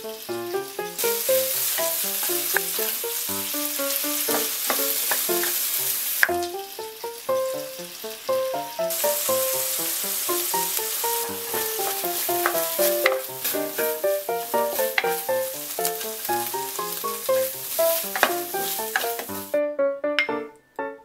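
Squid and onion sizzling as they are stir-fried in a nonstick frying pan, with occasional clicks of the cooking chopsticks against the pan. The sizzle starts about a second in, drops away for a few seconds around six seconds in, then returns until near the end. A light background melody plays under it.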